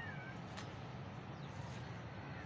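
Hands sifting and squeezing dry, gritty, pebbly sandy soil, a steady granular rustle. Near the start a short, falling animal call sounds in the background.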